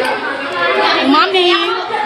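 High-pitched voices talking and chattering.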